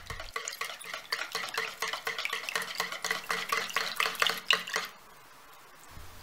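A metal utensil whisking a liquid mix of milk, oil, egg and salt in a plastic bowl: fast, even clicking and sloshing strokes against the bowl's sides that stop about five seconds in.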